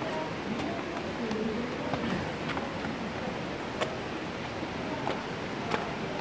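Steady rushing noise of falling water under faint voices, with a few light footstep clicks on stone steps.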